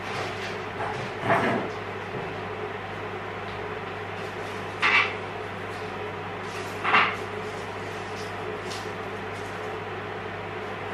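Off-camera household clatter over a steady hum: a knock about a second in, then two short sharp sounds about two seconds apart in the middle, as of cupboards or drawers being opened and shut while garlic is fetched.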